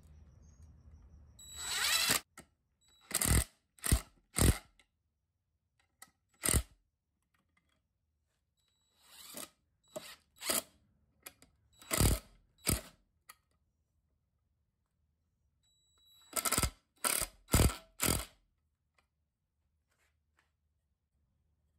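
Yellow cordless power driver running in short bursts as it drives long screws at an angle into redwood framing. The bursts come in three quick clusters with pauses between.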